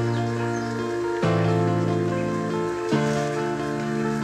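Background music: sustained chords that change about every one and a half to two seconds.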